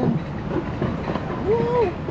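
Alpine coaster sled rolling along its metal rail track: a steady rattling rumble with scattered clicks.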